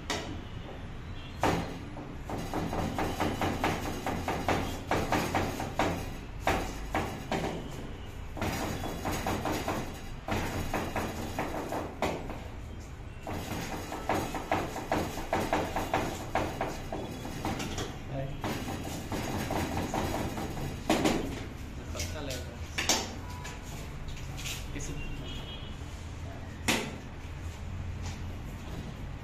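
Chef's knife rapidly chopping onion on a plastic cutting board: long runs of fast, even knife strikes with short pauses, then a few single cuts near the end.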